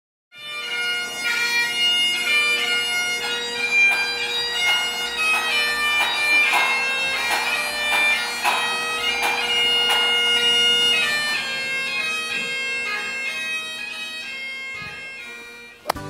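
Highland bagpipes playing a tune over their steady drones, the music fading down near the end.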